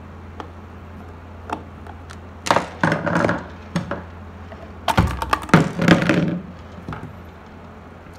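Hard plastic base cover of an electric kettle clicking, knocking and cracking as it is unscrewed, handled and pulled off, with scattered single clicks and two bursts of clatter about two and a half and five seconds in. A steady low hum runs underneath.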